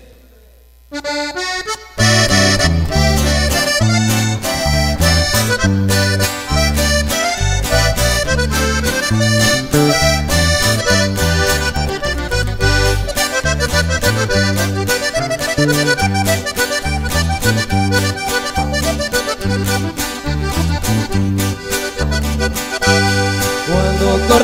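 Norteño band starting a corrido's instrumental introduction: after a brief pause, a Hohner button accordion plays a short lead-in about a second in, then the full band comes in at about two seconds, accordion melody over guitar strumming and a strong, steady bass beat.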